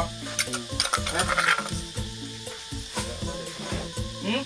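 A metal ladle scraping pounded chili paste out of a clay mortar and knocking against the rim of an aluminium cooking pot, in short irregular scrapes and clinks, over background music.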